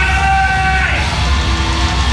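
Melodic death metal band playing live: distorted guitars and drums over a heavy low end, with high held lead notes that fade out about a second in.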